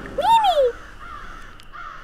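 A single short, call-like cartoon sound effect lasting about half a second, rising then falling in pitch, with a faint fading tail after it.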